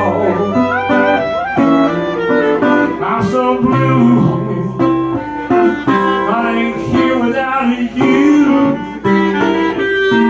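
Clarinet and guitar playing an instrumental passage of a blues song, live.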